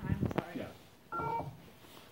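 A short electronic beep of several steady tones sounded together, starting about a second in and cut off after less than half a second, just after a brief burst of voices.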